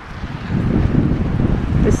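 Wind buffeting the microphone: a loud, gusty low rumble that swells up about half a second in.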